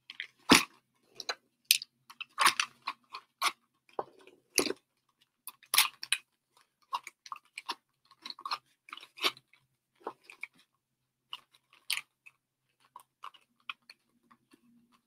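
A person chewing and crunching crunchy food close to the microphone, in irregular crunches with the loudest about half a second in.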